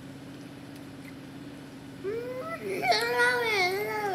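A young girl's voice making one long, drawn-out vocal sound, wavering up and down in pitch, starting about halfway in and lasting about two seconds. A steady low hum runs underneath.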